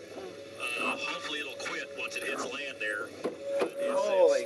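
Voices from a live TV weather broadcast, heard over a set in the car, with a steady hum underneath and two sharp clicks near the end.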